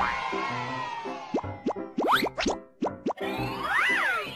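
Children's program intro jingle with a steady beat, overlaid in the middle with a quick run of short rising cartoon 'bloop' sound effects. Near the end a whistle-like swoop rises and then falls as the logo lands.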